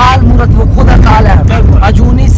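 Men talking inside a car's cabin over the steady low rumble of the car's engine and road noise.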